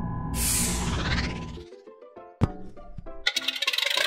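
Cartoon background music with a bright, high shimmering sweep about a third of a second in. The music then cuts out, a single sharp click follows, and near the end a fast mechanical rattle starts up, a sound effect of the animated Wright Flyer's engine starting.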